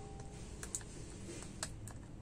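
Fingertips and nails tapping on a screen protector laid over an iPad's glass screen: a few light clicks, two close together under a second in and two more near the end.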